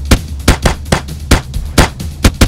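A rapid, irregular string of sharp bangs like gunfire, about three or four a second, over a steady low hum.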